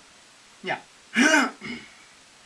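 Speech only: a man says "yeah", then clears his throat about a second in.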